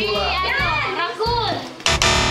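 A high-pitched voice calling out with sweeping rises and falls in pitch over background music; a loud buzzing sound starts just before the end.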